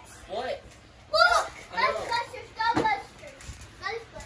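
Children's high-pitched voices calling out and squealing as they play: a few short, excited cries in quick succession, with no clear words.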